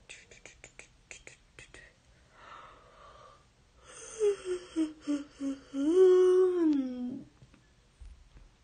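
A woman's voice hums a short wordless tune: a few brief notes stepping downward, then one longer note that rises, holds and slides down. Before it comes a quick run of faint clicks.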